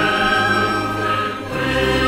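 Student symphony orchestra and choir performing live, the choir singing sustained chords over the orchestra. The sound dips briefly about a second and a half in before a new chord enters.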